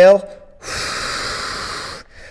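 A man's long, steady exhale, starting about half a second in and fading slightly toward the end, taken while stretched at the bottom of a 45-degree back extension.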